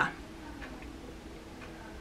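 A few faint, irregular light clicks from a small plastic lip gloss tube being handled and turned in the fingers, over a steady low hum of room tone.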